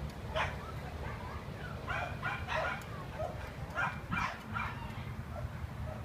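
A dog vocalising in short pitched bursts, several times in a few clusters, over a steady low rumble.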